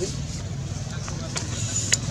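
A steady low motor rumble, with a couple of faint clicks and a brief high, thin whistle near the end.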